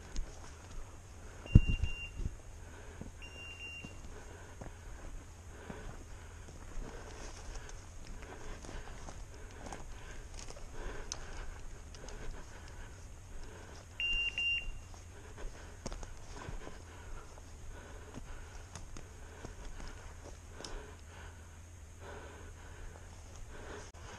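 Electronic beeper collar on a pointer giving three short, steady high beeps, two close together near the start and one more about two-thirds of the way through, the signal that the dog is holding point on a woodcock. Under it, footsteps crunch and rustle through dry brush and twigs, with a sharp thump about a second and a half in.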